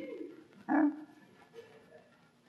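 A man's voice: a short gliding hum at the start, then a loud, clipped "Huh?" about two-thirds of a second in.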